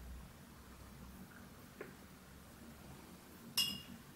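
A single sharp clink with a short ring, about three and a half seconds in, as a paintbrush is put down against a hard container; a faint tick comes about two seconds in.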